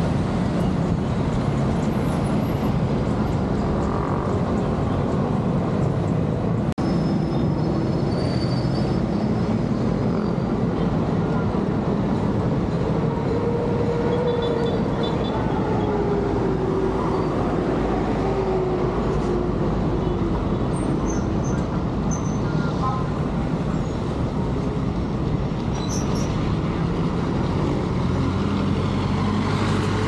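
Street traffic noise, a steady roar of vehicles, with a tone that slowly falls about halfway through as a vehicle slows or passes, and indistinct voices underneath.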